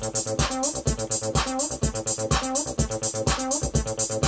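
A looping 303-style monophonic synth bassline from a Mutable Instruments Ambika, driven by a step sequencer, plays over a drum beat. Some notes slide up in pitch into the next where glide is switched on.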